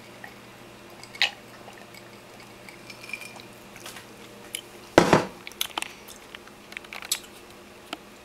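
A glass of iced tea with ice set down on a countertop: one sharp knock about five seconds in, followed by a few light clicks and taps. A single small click comes a little over a second in.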